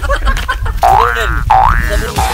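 Two quick rising-pitch cartoon sound effects, each sweeping up about a second apart, laid over background music with a steady low beat.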